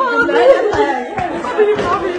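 Several people talking loudly at once, their voices overlapping in an excited jumble.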